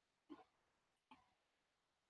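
A man faintly clearing his throat twice, less than a second apart, the first a little louder.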